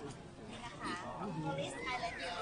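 Voices of people in a small gathering, with a high-pitched voice rising and falling in the second half.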